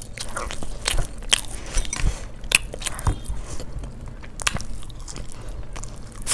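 Chicken biryani eaten by hand, picked up close: chewing with irregular sharp, crisp clicks and crunches.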